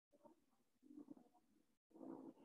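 Near silence: room tone with a few faint low sounds, loudest about a second in.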